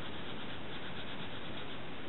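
Pencil rubbing across a craft-foam shape as a star is drawn on it, over a steady hiss.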